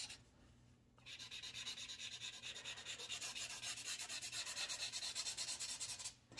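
A pen tip scratching on paper in quick back-and-forth shading strokes, several a second. The strokes start about a second in.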